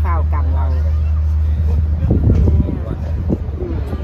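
A steady low rumble runs underneath throughout, with a woman's voice briefly at the start; about two seconds in the rumble surges briefly into a louder, uneven burst of noise.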